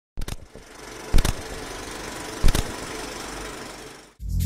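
Logo-intro sound effect: a steady noise struck by sharp hits, twice at the very start, once about a second in and once about two and a half seconds in, fading out near the end.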